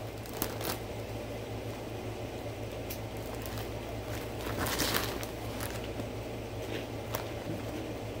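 Crunchy corn-and-potato snack sticks being chewed and their plastic snack bag handled: a few sharp crunchy clicks and a louder stretch of crinkling about halfway through, over a steady low hum.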